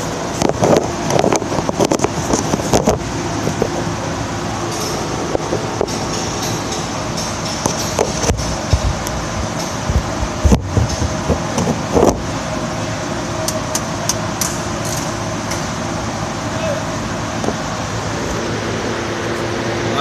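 Steady hum of shop ambience with scattered metallic clicks and knocks, clustered about a second in and again between eight and twelve seconds in, as a ratchet and socket work a truck's oil drain plug to break it loose.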